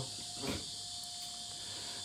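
Quiet background: a steady high-pitched hiss with a faint steady tone underneath, and a slight soft blip about half a second in.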